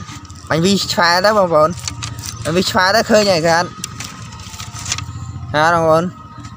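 A man's voice making three drawn-out, wavering vocal sounds that rise and fall in pitch, over a steady low rumble.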